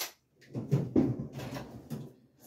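Objects being handled and bumped on a workbench: a run of knocks and rustling, with the loudest thump about a second in.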